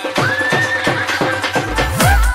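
Hindi/Rajasthani DJ dance remix music: a long, high, wavering tone held over a beat, with heavy bass kicks coming in near the end.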